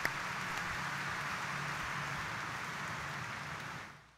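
Congregation applauding in church, an even steady clapping that cuts off suddenly near the end.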